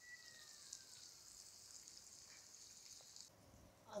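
Faint sizzle and crackle of masala-coated elephant foot yam slices shallow-frying in hot oil, the slices now cooked through. It cuts off abruptly about three seconds in.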